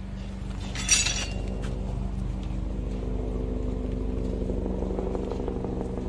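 Construction-site background: a steady motor hum, with a single sharp metallic clink about a second in.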